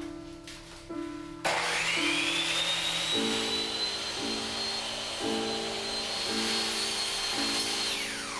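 Skilsaw electric miter saw switched on about a second and a half in: its motor whine rises quickly, then holds steady as the blade cuts through a loaf of bread, and starts to wind down at the very end. Piano music plays underneath.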